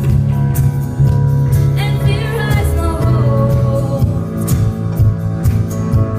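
Live band playing a slow song, with a girl singing the lead vocal over guitar, keyboard and drums.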